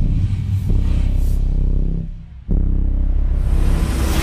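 Cinematic trailer score under a title card: deep, low hits that each ring out into a sustained low drone, one landing just under a second in and another about two and a half seconds in after a brief dip. A rising hiss builds near the end.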